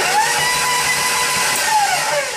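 Stand mixer motor running with a steady whine as its flat beater beats softened butter on its own, the pitch dipping slightly near the end.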